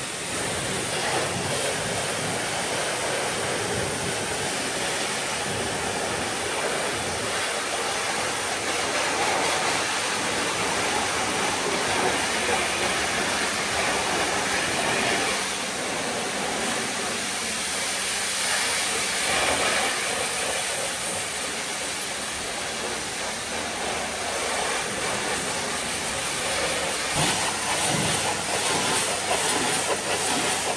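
Pressure-washer lance spraying a continuous jet of water onto a van's bodywork, rinsing off the foam: a steady, loud hiss that swells a little as the spray moves over the panels.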